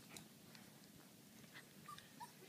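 Very faint sounds of a goldendoodle puppy mouthing a cotton sheet: a few soft clicks and rustles, with one brief high whimper near the end.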